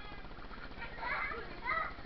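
Children's voices shouting and calling out while they play, with a louder burst of shouts about a second in and another near the end.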